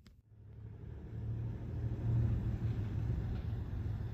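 A low, steady rumble that fades in over the first second and then holds.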